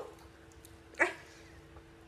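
A short girl's exclamation, "ay", about a second in, over a faint steady hum.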